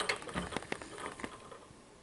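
A quick run of light clicks and knocks from glass test tubes being handled, one set down and the next picked up, dying away after about a second and a half.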